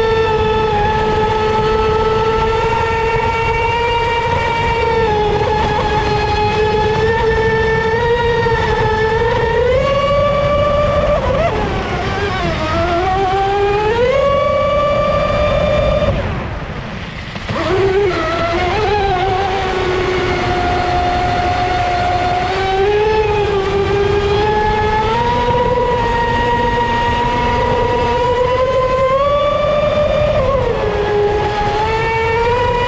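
Leopard 4082 2000kv brushless motor in an RC speedboat whining at speed, its pitch rising and falling with the throttle, easing off briefly a little past halfway before climbing again, over a steady rush of wind and water at the onboard microphone.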